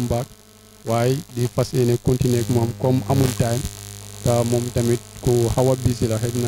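A man talking into a handheld microphone over a steady electrical hum, which is heard alone in a short pause near the start.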